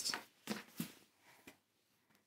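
Fabric being folded and slid across a cutting mat by hand: a few short, soft rustles.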